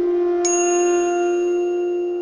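Background music: a flute holds one long note while a bright bell-like chime strikes once about half a second in and rings on.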